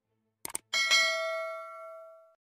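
Subscribe-button sound effects: a quick double mouse click about half a second in, then one bright bell ding that rings on and fades over about a second and a half.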